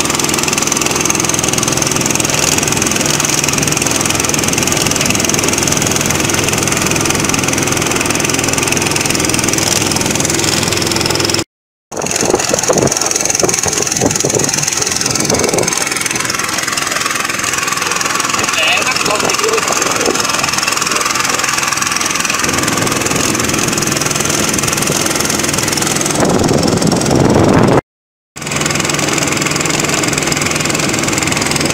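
Small fishing boat's motor running steadily under way, a loud, even drone with water and wind noise around it. It cuts off briefly twice, about eleven seconds in and near the end.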